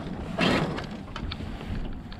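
Wind buffeting the microphone and water moving past a small sailboat's hull under sail, with no motor running; a short louder rush of noise comes about half a second in.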